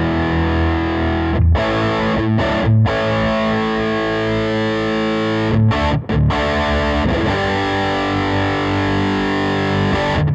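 Electric guitar through a Mesa/Boogie Throttle Box distortion pedal on its high-gain side, playing held, heavily distorted chords with short breaks between chord changes.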